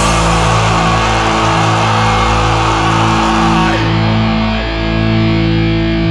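Death metal track with distorted electric guitars and bass holding one sustained, ringing chord, without drums; the highest treble fades away about two-thirds of the way through.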